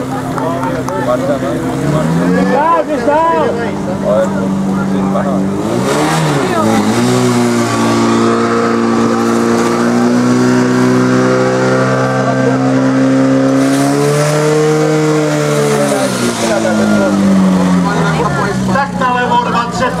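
Portable fire pump engine revving up about six seconds in, held at high revs while pumping water through the attack hoses, then throttled back near the end as the run finishes. Shouting voices over the engine at the start.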